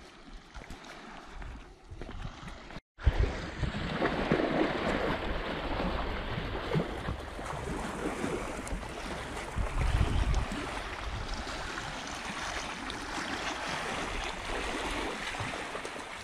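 Wind rushing over the microphone: a steady noise with low, buffeting gusts. It cuts out for a moment about three seconds in, then comes back louder.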